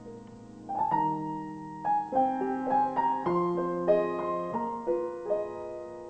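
Grand piano played solo at a slow bolero pace. A held chord fades away, then just under a second in a melody over chords begins, with notes struck every few tenths of a second.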